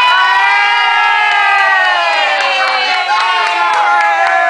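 Several women screaming and cheering with excitement: long, high-pitched shrieks from overlapping voices that slowly fall in pitch.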